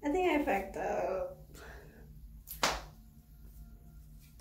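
A woman's wordless vocal exclamation lasting about a second, followed about two and a half seconds in by a single sharp smack.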